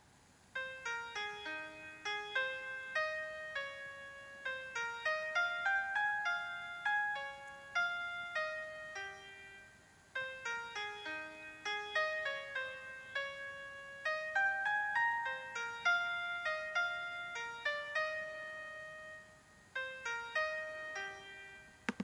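Sibelius notation software playing back a single-line melody, one note at a time in a piano-like keyboard sound, with a short break about halfway through. The composer judges that one upbeat, C, C, B then a leap up to E, doesn't work.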